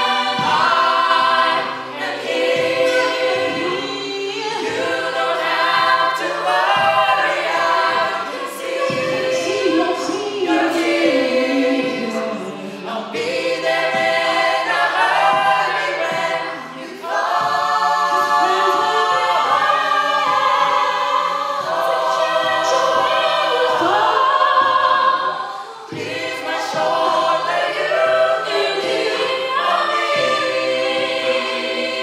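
Mixed-voice a cappella group singing with no instruments: lead voices over close backing harmonies and a low sung bass line moving in steady steps.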